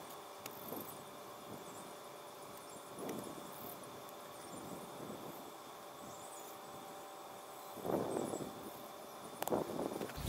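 Soft rustling and scraping of hands working through grass and loose soil in a dug turf plug, loudest about eight seconds in, over a faint steady background hum.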